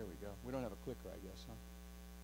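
Steady electrical mains hum in the recording's sound system, with a brief untranscribed voice during the first second and a half.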